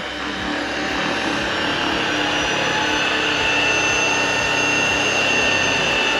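Tineco S11 cordless stick vacuum's brushless motor running as it is pushed over a carpet rug, growing louder over the first two seconds as a high whine settles in. This is the vacuum's dirt sensor automatically stepping up suction on the carpet.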